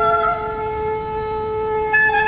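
Instrumental Azerbaijani folk music: a wind instrument holds a long note over a steady drone, and the melody starts moving again at the very end.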